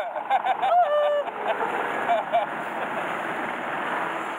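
A powerboat running at speed: a steady rush of wind and water noise over the open boat, with voices briefly over it in the first second or so.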